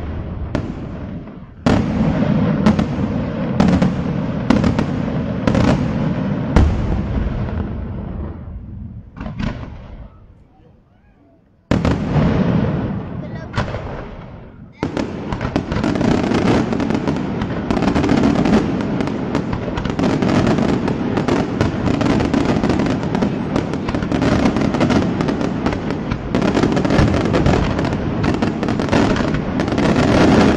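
Daytime fireworks display: rapid volleys of bangs and crackling shells that die away almost to quiet about ten seconds in, start again with a sudden burst, then build into a dense, almost continuous barrage of reports from about halfway through.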